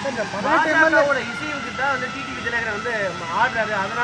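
A man speaking, with a thin steady tone in the background from about a second in.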